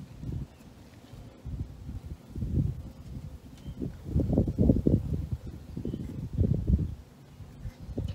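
Wind buffeting the microphone in irregular low rumbling gusts, strongest about halfway through and again near the end.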